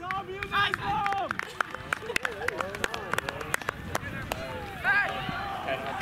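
Ultimate frisbee players calling and shouting across a grass field, their voices fairly faint, with footfalls of running players as a rapid scatter of sharp ticks through the middle seconds.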